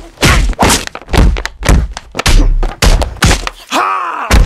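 Repeated heavy thuds of a stick struck down on a candy-filled piñata on a carpeted floor, about two blows a second. A man yells near the end.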